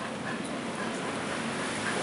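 A dog whining in a few short, faint whimpers.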